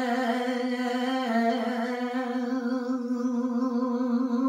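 A man singing Punjabi kalam unaccompanied, holding one long sustained note with a slight waver in pitch about a second in.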